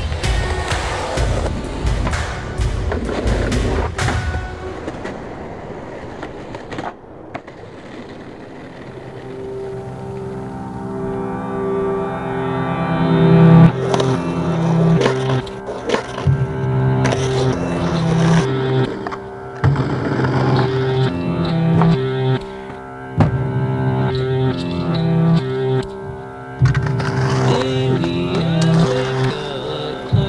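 Skateboard wheels rolling on concrete, with the board's pops and landings clacking sharply several times, mixed with a music track that rises in from about a third of the way in.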